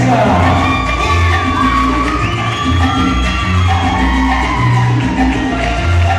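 Salsa music played loud over a sound system: a steady, pulsing bass beat under a held melody line that glides up and down.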